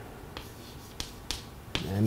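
Chalk writing on a chalkboard: a few sharp taps and clicks as the chalk strikes the board, the clearest about a second in and another near the end.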